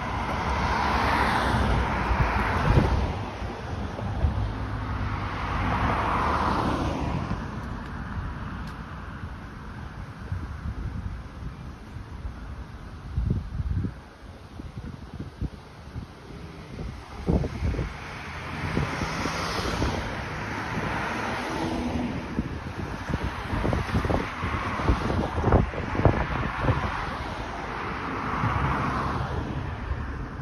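Road traffic on a multi-lane street: cars passing one after another, swelling and fading several times. Gusts of wind buffet the microphone in the second half.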